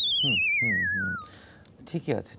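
Electronic sound effect: a warbling tone that glides down in pitch over about a second and a half, with a voice talking beneath it.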